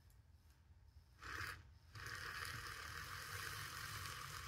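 Handheld milk frother whirring as its whisk churns a glass of coffee: a short burst about a second in, then running steadily from about two seconds in.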